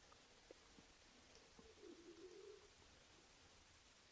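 Near silence: faint outdoor ambience, with a faint brief sound about two seconds in.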